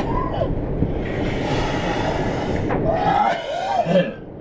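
Road and engine rumble inside a moving van's cab, with a rushing hiss for about a second and a half in the middle. Brief wordless voice sounds come at the start and again near the end.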